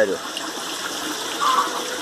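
Steady rush of water running through an aquaponics system.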